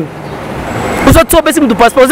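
A man talking, with road traffic behind him; the traffic noise swells over the first second before his speech resumes.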